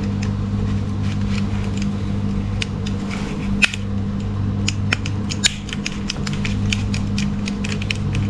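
Irregular small, sharp clicks and taps of plastic model-kit parts being handled and pressed together, the sharpest about three and a half and five seconds in, over a steady low hum.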